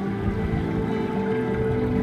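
Ambient music of slow, sustained low notes, with no beat.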